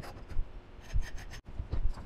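A hand file deburring the cut end of a piece of metal tubing: a few short, separate rasping strokes.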